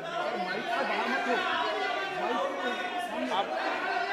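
Many voices talking over one another at once: overlapping chatter of members in a parliamentary chamber, with no single speaker standing out.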